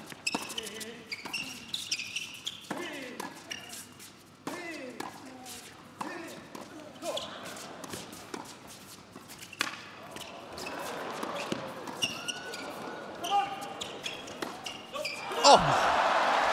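A tennis doubles rally on an indoor hard court: irregular sharp pops of racket strings striking the ball and the ball bouncing, mixed with short squeaks and calls from the players. Near the end the crowd breaks into loud applause and cheering as the point is won.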